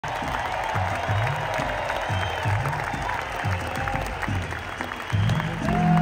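Live band music in an arena with the audience applauding and whistling over a steady low beat. About five seconds in, a sustained low bass note comes in and the music gets louder.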